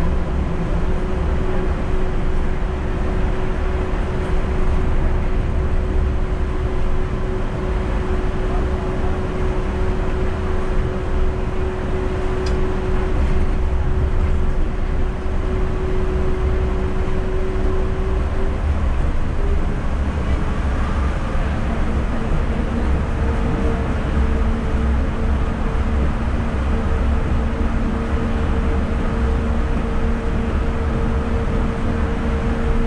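Yurikamome rubber-tyred automated guideway train running at speed, heard inside the front of the car: a steady rumble with a humming tone that steps up to a higher pitch about two-thirds of the way through.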